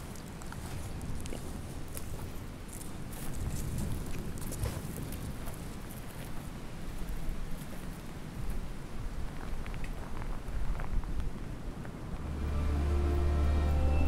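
Wind noise on the microphone with scattered light crackles. About twelve seconds in, a low droning soundtrack music swells in.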